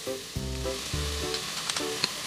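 Sliced button mushrooms sizzling steadily as they fry in the stainless steel inner pot of an induction rice cooker, stirred with a spatula.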